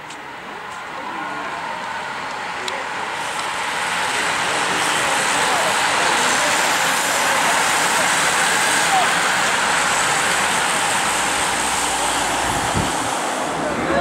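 A bunch of racing bicycles passing at speed: a rush of tyres on tarmac and whirring freewheels that builds, holds loud through the middle and eases off near the end.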